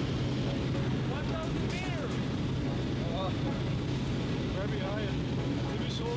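Steady drone of a small skydiving aircraft's engine heard from inside the cabin, with short raised voices calling out over it a few times.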